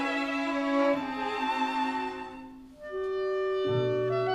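Small orchestra playing a slow, quiet passage: a string phrase fades almost to silence, then a wind instrument enters on a long held note, with lower notes joining near the end.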